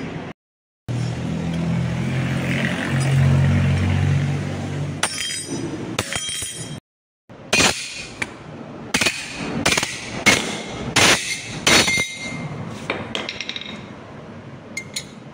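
A machine hums steadily for the first few seconds. After a cut, steel pieces clink and knock sharply, about a dozen strikes over some five seconds, as metal parts are handled and struck.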